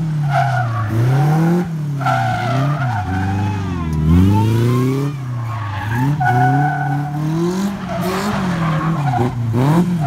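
Engine of the Fobby Special, a small open-wheeled special, revving up and down over and over as it is driven hard through a tight cone course, dropping to low revs about three to four seconds in.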